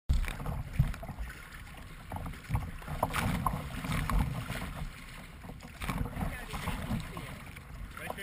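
Choppy river water slapping and splashing against a plastic kayak's bow right at the camera, in irregular slaps with a low rumble underneath.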